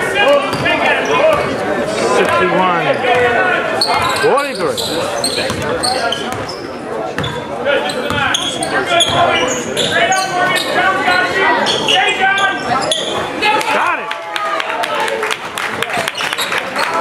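A basketball dribbled on a hardwood gym floor, its bounces echoing in the large hall, with voices calling out over it.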